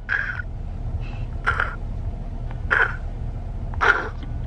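A young boy imitating a bumblebee buzzing in his ear with his voice: four short, breathy bursts about a second apart that sound like choking, over the low rumble of a car cabin.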